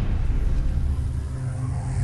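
Deep, steady low rumble of a news-bulletin transition sound effect under an animated title card, following a swoosh that rises just before it.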